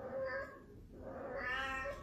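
Ragdoll cat meowing twice: a short meow at the start, then a longer one a little over a second in.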